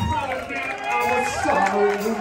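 Live blues-rock band dropping into a stop-time break: the bass and drums cut out, leaving pitched notes that slide up and down over the room.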